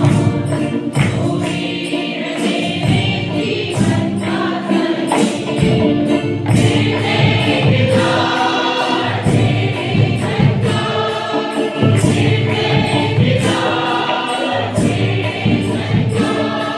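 Church choir of women and men singing a worship song together, over a steady percussion beat.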